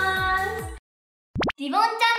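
A voice over music with a beat cuts off just before a second in. After a moment of dead silence comes a short 'plop' sound effect, a quick rising pitch sweep, and then a voice starts.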